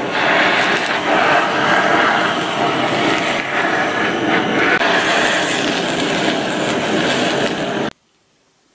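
Handheld kitchen blowtorch flame burning with a loud, steady hiss as it sears spicy braised pig tails. It cuts off suddenly near the end.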